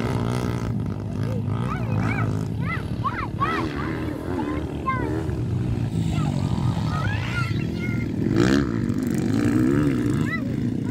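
Dirt bike engines revving on a motocross track, over a steady engine drone. The pitch rises and falls again and again as the throttle is worked, with a louder rev near the end.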